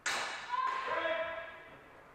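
Steel training swords clashing twice, about two-thirds of a second apart, and each blow leaves a metallic ringing that fades out over about a second.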